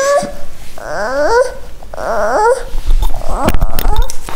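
A young child whining and fussing: a string of about four high, whiny cries, most of them sliding upward in pitch.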